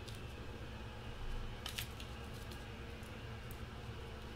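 Trading cards being handled on a desk: a few short clicks and rustles about a second and a half in, over a steady low room hum.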